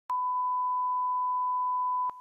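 Steady 1 kHz sine test tone, the reference tone that accompanies colour bars for audio line-up. It starts abruptly just after the opening and holds at one pitch and level.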